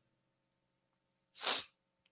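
One short, sharp breath drawn close to a handheld microphone about one and a half seconds in, with near silence around it.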